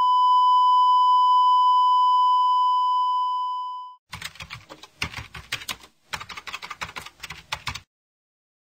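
A long steady electronic beep at one pitch that cuts off after about four seconds. Then a rapid clatter of typing keystrokes follows in two runs with a short break between, a typing sound effect for text appearing on screen.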